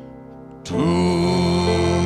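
Instrumental music: a quiet held tail of notes fades, then about two-thirds of a second in a loud, sustained orchestral chord swells in and holds.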